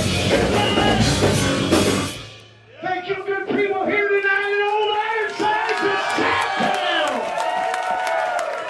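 A rock trio of electric bass, drum kit and organ plays the final bars of a song and stops abruptly about two seconds in. After a brief lull the audience cheers and whoops, with clapping joining in.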